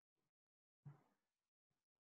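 Near silence: room tone, with one faint short sound about a second in.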